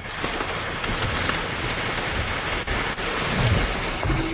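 Steady, even rushing noise filling the audio line, with a few faint low thumps, and no speech.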